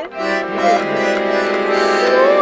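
Piano accordion playing loud, held chords, with a short break just after the start. The playing is clumsy: the player is said to have no ear for music.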